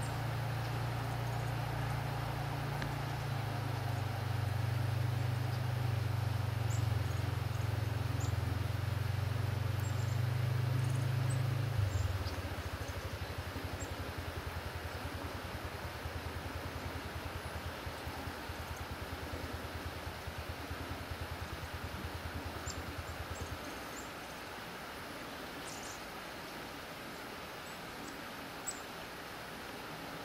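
A low mechanical hum that changes to a rapid flutter about twelve seconds in and fades away at about twenty-four seconds, with a few faint high bird peeps over it.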